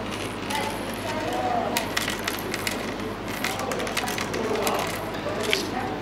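Light clicks and ticks of steel leader wire being twisted by hand to finish off a fishing trace, over a murmur of faint background voices.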